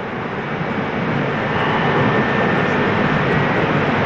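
Steady background noise in a large courtroom heard over the broadcast feed: an even hiss and rumble with a faint thin tone, swelling slightly, with no distinct events.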